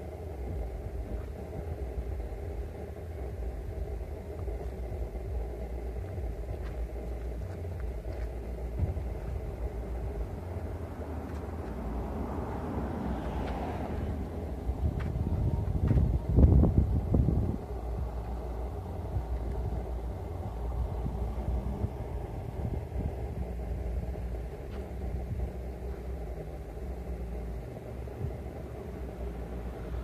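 Steady low rumble of wind and road traffic, with a vehicle passing close by about halfway through, the loudest moment.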